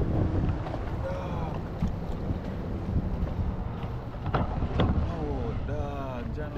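Wind buffeting the camera microphone, a steady low rumble, with faint voices in the background.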